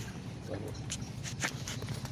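A few sharp clicks and scuffs of handling, most of them in the second half, over a steady low rumble.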